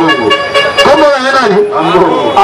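A vehicle horn sounds one steady note for about the first second, under a man talking over a microphone.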